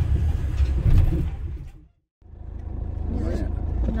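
Low, steady engine and road rumble heard inside the cab of a Toyota Hilux pickup on the move. It fades out to a moment of silence about two seconds in, then fades back in.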